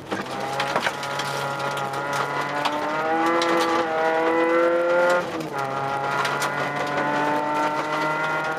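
Mk2 Volkswagen Jetta rally car's engine heard from inside the cabin, pulling hard on a gravel stage. Its pitch climbs for about five seconds, drops suddenly as the driver changes gear or lifts, then climbs again, with short ticks of gravel throughout.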